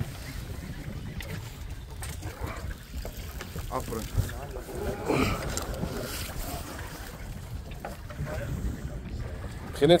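Steady low rumble of a small fishing boat at sea, with wind and water on the microphone and faint, muffled voices around the middle.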